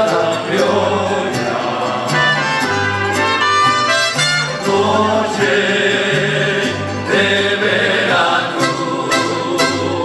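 Live mariachi ensemble playing: violins and trumpets over strummed guitars and a stepping bass line.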